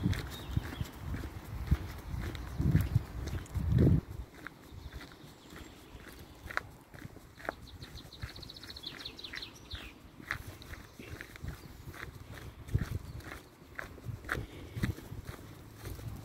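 Footsteps on a gravel and leaf-covered forest path, a steady walking pace of short crunches, with dull low bumps in the first few seconds. About halfway through, a bird gives a short high trill.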